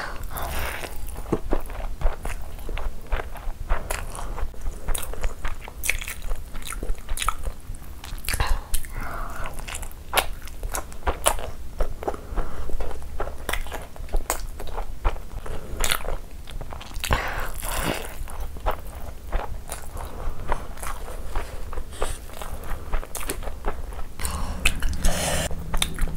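Close-miked chewing and wet mouth sounds of a person eating chicken biryani with her hand, with many small irregular clicks and smacks throughout.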